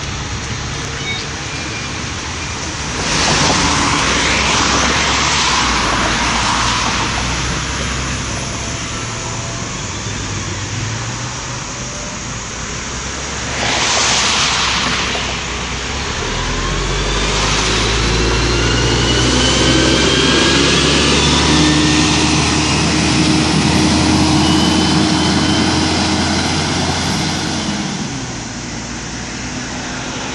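Double-decker bus at a stop: two loud hisses of air, a long one a few seconds in and a shorter one about halfway, then the engine revs as the bus pulls away, with a rising whine from the drivetrain that climbs for several seconds before the sound drops off near the end.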